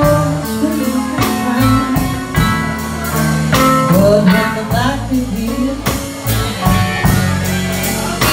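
Live blues band playing: a drum kit keeps a steady beat under electric guitar and bass, with a woman singing.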